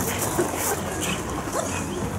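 A dog giving a few short, rising, high-pitched cries, about a second in and again near the end.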